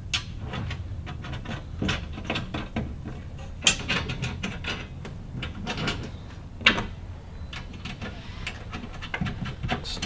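Small metal clicks and taps of a bolt, washer and nut being fitted by hand through the holes of powder-coated steel MOLLE panels, with sharper clinks about four and seven seconds in.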